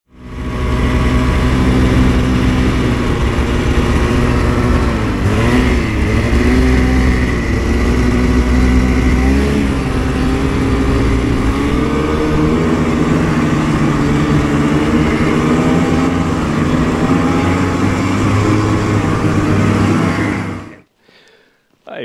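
Snowmobile engine running under way, heard from the rider's seat, its pitch dipping and rising a few times. It cuts off suddenly near the end.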